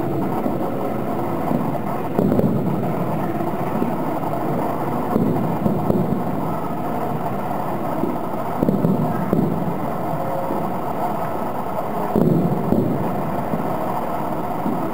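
Distant fireworks bursting, heard as dull, rumbling booms that swell up every three or four seconds over a steady background din.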